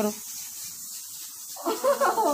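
Speech with a pause: a voice trails off at the start, faint background hiss fills about a second and a half, then a voice rises loudly near the end.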